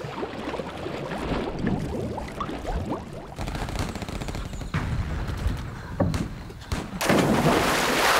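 Muffled underwater sound with a few dull knocks, then a loud splash of a person diving into the water about seven seconds in.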